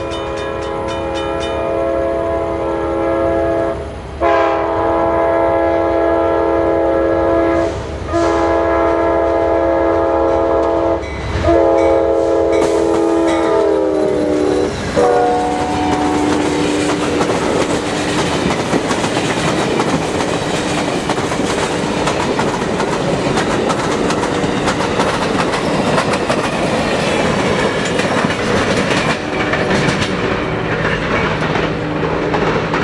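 Amtrak Silver Star led by GE P42DC locomotives sounding a multi-chime horn in four long blasts as it approaches, the last blast dropping in pitch as the locomotives pass. Then comes the loud rushing clatter of the passenger cars going by at speed.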